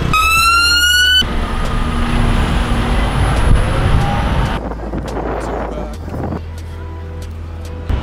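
City road traffic: a siren's rising tone for about a second at the start, then the noise of passing vehicles with a steady low engine rumble, a heavy lorry among them. The sound drops quieter about two-thirds of the way through.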